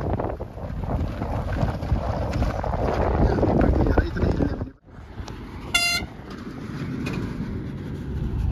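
Wind and road noise of a moving car, breaking off abruptly just before the middle. About a second later a vehicle horn gives one short toot over quieter road noise.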